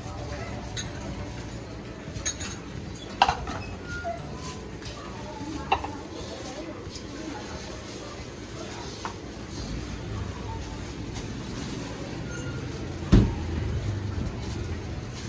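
Ceramic bowls and utensils clinking as a vendor puts toppings into soup bowls, with sharp clinks about three and six seconds in and a louder knock near the end, over a steady background hum and voices.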